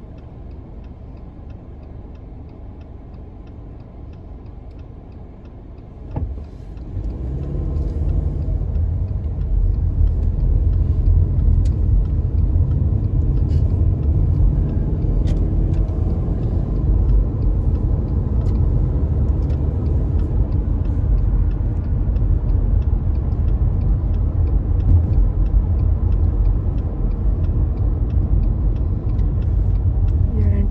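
Car heard from inside the cabin: quiet idling at a red light, then about six seconds in a short click and the car pulls away, its low engine and tyre rumble growing louder and holding steady as it cruises.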